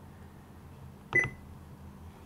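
Radio scanner audio at low level: a faint steady hum, broken about a second in by one short burst that carries a brief high beep.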